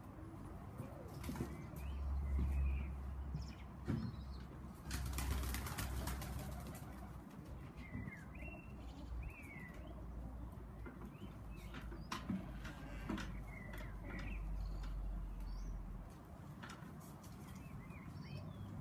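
Tippler pigeons flapping their wings as they come down to land on the loft, with a loud flurry of wingbeats about five seconds in. A few short chirps sound in between.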